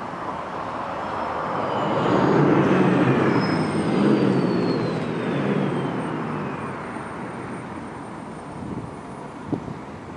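A vehicle passing by. A rumble swells to its loudest about two to four seconds in and then fades, while a faint high whine falls in pitch as it moves away.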